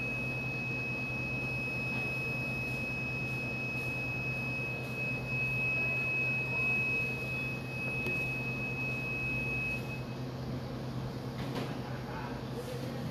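A steady low hum with a thin, steady high-pitched whine over it; the whine cuts off about ten seconds in.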